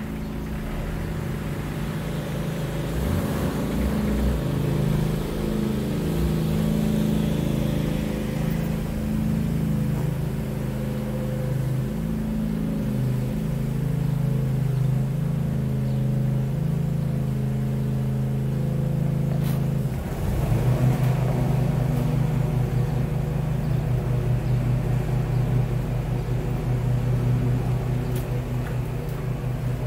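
A Jeep engine idling steadily; about twenty seconds in its note shifts and gets louder.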